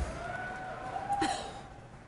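Quiet, wordless vocal sounds of a woman laughing and trying to compose herself: a faint held note for about a second, then a short falling sound. A soft knock comes right at the start.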